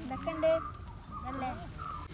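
Children's voices talking quietly, in short phrases.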